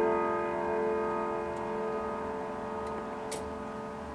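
Chimes of a Howard Miller grandfather clock ringing on and slowly fading after their last struck notes, with the clock ticking underneath. A single light click about three seconds in.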